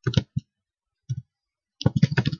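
A few separate clicks from a computer keyboard and mouse, then a quick run of key clicks near the end.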